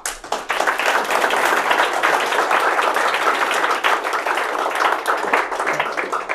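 Audience applauding: many hands clapping in a dense patter that starts suddenly and dies away near the end.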